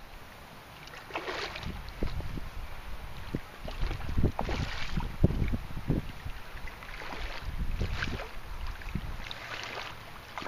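Water splashing in short bursts as a large rainbow trout thrashes at the surface of a shallow stream, over a steady low rumble of wind on the microphone.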